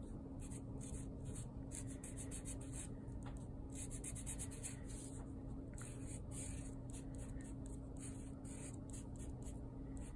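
Black Sharpie permanent marker drawing on a brown sheet in many short, quick strokes.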